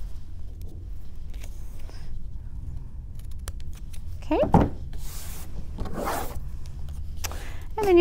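Scissors snipping through a strip of patterned paper, a few faint small clicks, followed by several short rustles of card stock being slid and handled.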